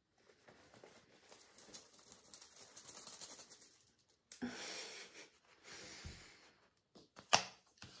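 Soft rustling and small clicks of a satin drawstring pouch being handled and opened, with sharper rustles about four seconds in and again near the end.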